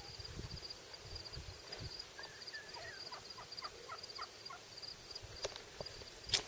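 Faint insects chirping in a steady pulsing rhythm, with a series of short, faint calls from wild turkeys in the middle.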